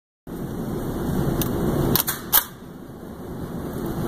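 Steady low background noise with three sharp mechanical clicks about two seconds in, the last the loudest: a Kriss Vector .45 ACP carbine being handled and readied before firing.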